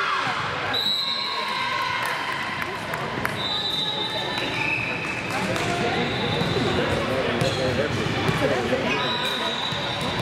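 Echoing gym ambience at a volleyball match: voices of players and onlookers over the court, with a volleyball bouncing on the hardwood floor. Several long, steady high-pitched tones come and go, about a second in, in the middle, and again near the end.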